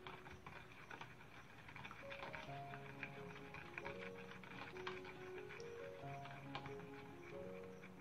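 Quiet background music with slow, held notes, over light ticks of a spoon stirring against the sides of a plastic tub as gelatin dissolves in hot water.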